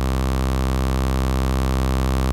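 Low, steady synthesizer drone: a sawtooth oscillator in a Voltage Modular patch run through a Playertron Jadwiga single-pole filter set to high-pass with its low output mixed back in, which makes a notch filter.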